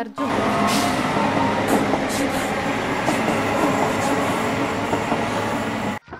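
Loud, steady rumbling background noise with faint voices in it, cutting in and out abruptly.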